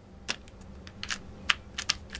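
A foam puzzle-piece stamp being tapped onto a plastic-cased ink pad to ink it: a quick, irregular series of light clicks and taps, the loudest about halfway through and a quick cluster near the end.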